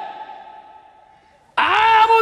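A man's drawn-out chanted note through a PA system fading away in echo, then, about one and a half seconds in, a new long held chanted note starting suddenly and loud.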